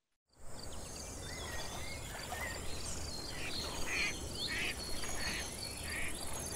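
Outdoor nature ambience: insects chirping steadily with scattered bird calls. It starts suddenly after a moment of silence.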